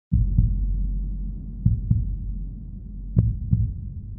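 A slow heartbeat: paired lub-dub thumps about every second and a half over a low steady hum. It starts suddenly.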